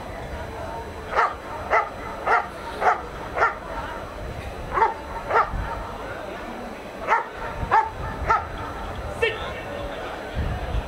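A German Shepherd barking in short, sharp barks, about two a second, in three runs: five barks, a pause, two more, then four.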